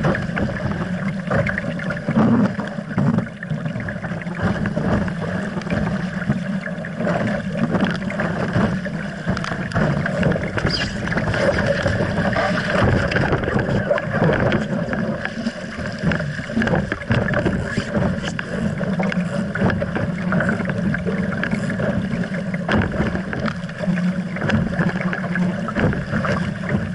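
Water rushing and splashing past the hull of an RS Aero sailing dinghy moving fast in a fresh breeze, mixed with wind on the deck-mounted camera's microphone: a steady, surging rush with no distinct knocks.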